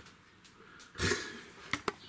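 A person's short breath out about halfway through, then two quick light clicks near the end; otherwise a quiet room.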